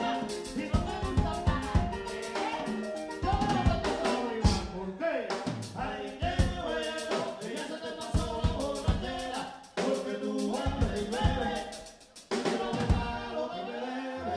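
Live Cuban band playing a song: a male singer over drum kit and percussion, with bass and keyboard, keeping a steady beat. The band drops out briefly twice, about ten and twelve seconds in.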